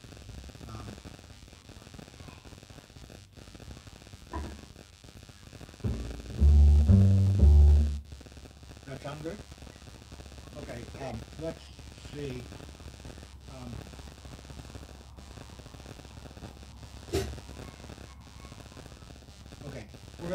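A few loud, low plucked notes on an upright double bass about six seconds in, stepping in pitch, as the bass is checked before the next tune. Quiet talk continues around them.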